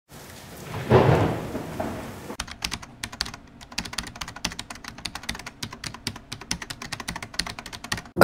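A whoosh that swells and fades over the first two seconds, then rapid, irregular clicking much like keyboard typing until the end.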